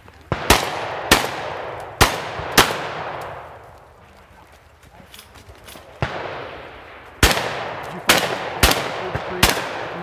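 Shotgun shots: four in the first few seconds, a pause of about four seconds, then four more in quick succession, each shot followed by a long echo.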